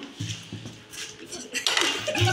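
A plastic plate being handled and moved about, with light clattering and knocks.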